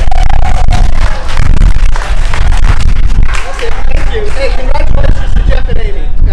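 Heavy wind buffeting the microphone, a continuous low rumble that runs near full level. Voices of a small crowd talk and call out over it, most clearly in the second half.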